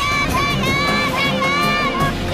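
Background music led by a high-pitched, voice-like melody in short phrases that bend up and down, over a steady backing.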